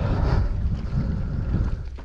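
Strong wind buffeting the microphone: a low, gusty noise that rises and falls.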